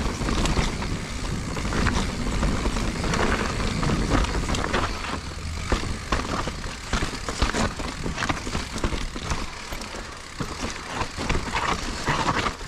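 2021 Giant Reign Advanced Pro 29 full-suspension mountain bike rolling down a rocky dirt trail. Its tyres crunch over soil and stones under a low rumble, with many sharp rattles and clacks from the bike as it hits rocks, coming thickest in the second half.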